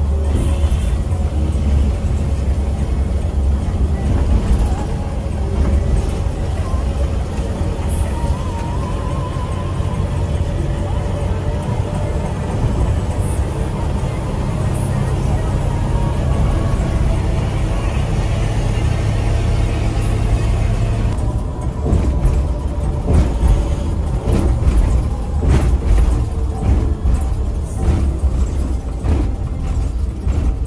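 Inside a Mercedes-Benz 1626 coach on the highway: the diesel engine drones low and steady with road noise, and music plays over it. About two-thirds of the way in the steady engine tone drops away, and a run of sharp ticks and knocks follows.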